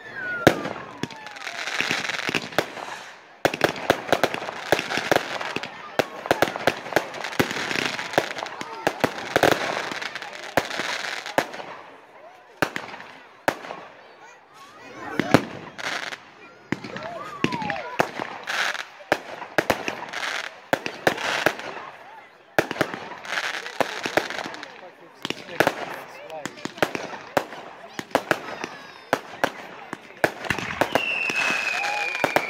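Aerial display fireworks going off in quick succession, with many sharp bangs and crackling bursts. A whistle falls in pitch at the start and another about halfway through.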